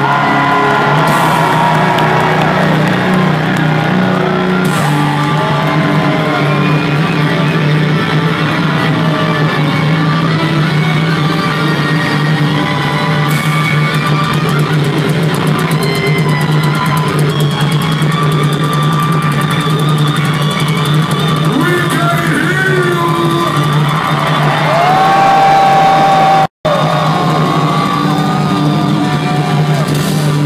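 Live metal band playing at full volume: distorted electric guitars, bass and drums, with bending guitar notes, recorded from within the crowd. The sound cuts out for an instant near the end.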